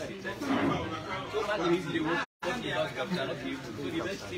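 Several people talking at once, indistinct overlapping chatter with no single clear speaker. The sound drops out completely for a split second a little past two seconds in.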